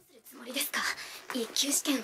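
Quiet, breathy spoken dialogue from an anime soundtrack: one character's soft line.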